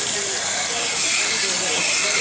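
Steady hiss of a salon shampoo-bowl sprayer spraying water over the hair, rinsing out the toner.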